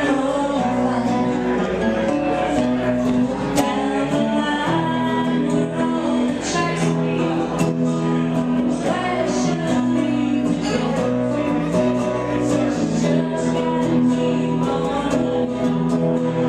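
Live acoustic duo: a steel-string acoustic guitar strummed steadily with a woman singing over it through a microphone.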